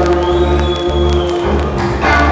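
A live rock band playing: electric guitar and bass over drums, with a held guitar note that slides up about a quarter second in.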